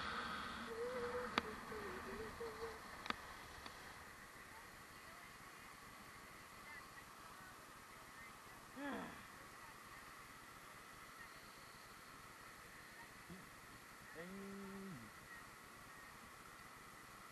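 Faint steady hiss of skis sliding on a groomed snow run, with a few short wordless voice sounds over it: a wavering hum in the first few seconds, a falling whoop about nine seconds in, and a short hum near the end.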